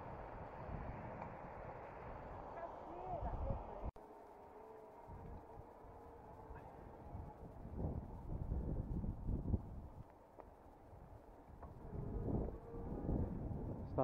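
Wind on the microphone and tyre rumble from a bicycle on a tarmac path. The noise breaks off sharply about four seconds in and then goes on.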